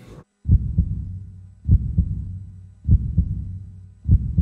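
Heartbeat sound effect in an outro: three slow double thumps, a "lub-dub" about every second, over a steady low hum.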